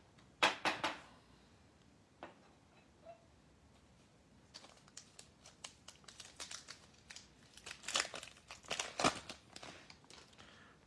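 A trading-card pack wrapper being torn open and crinkled by hand. A few sharp crackles come about half a second in, then a run of crinkling builds and peaks shortly before the end.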